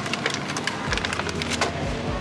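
Thin plastic clamshell strawberry packs clicking and crackling as they are grabbed and lifted from a stack, over background music with a steady beat.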